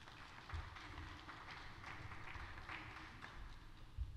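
Faint audience noise in a theatre hall: a hazy rustle dotted with light, scattered clapping.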